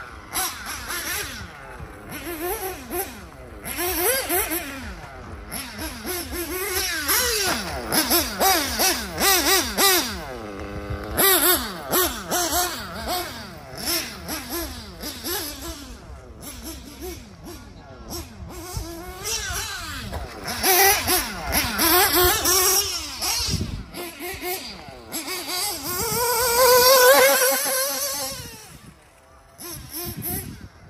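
HB D817 1/8-scale nitro buggy's Picco P3 TT engine revving up and down as the buggy laps the track, its high pitch rising with each burst of throttle and falling as it lifts off. The loudest part is a long rising run near the end, after which the sound drops away.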